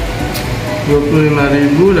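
A man's voice speaking Indonesian, starting about halfway through, over a steady low background hum.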